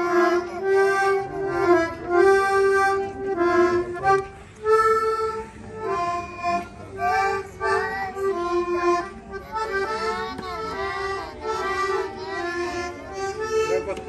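Piano accordion playing a melody over a steady held note, the melody notes wavering in pitch in the second half.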